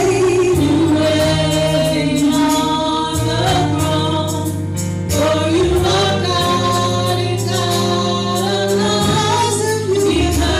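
Gospel praise-and-worship singing by a small group of singers on microphones, voices held and gliding between notes, over an accompaniment that holds long low notes.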